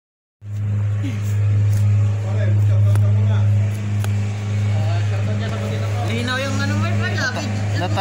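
A loud, steady low hum, with people talking over it from about six seconds in.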